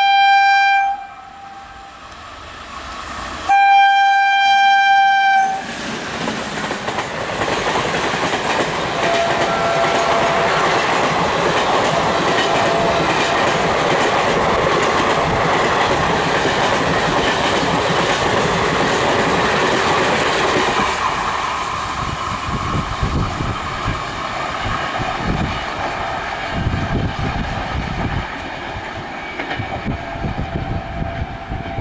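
Indian Railways WAG-7 electric locomotive sounding its air horn: one blast ending about a second in, then a second long blast a few seconds in. The locomotive and its passenger coaches then rush past at speed with a loud, steady rush of wheels and clickety-clack over the rail joints, easing after about twenty seconds to a quieter, rhythmic beat of wheels on joints as the train draws away.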